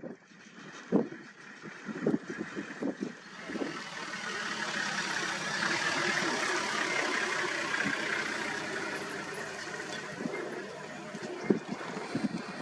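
A vehicle passing: a broad rushing noise that swells to a peak about six seconds in and then fades away. It follows a few short, sharp sounds in the first few seconds.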